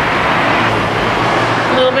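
Steady, loud rushing background noise with no distinct events in it, of the kind heard from street traffic.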